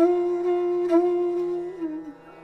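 Bansuri (Indian bamboo flute) holding one steady low note, re-articulated about a second in, then sliding down in pitch and fading near the end, over a steady low drone.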